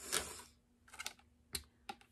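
Wax melt packages being handled: a short rustle, then a few sharp light clicks about a second in and near the end.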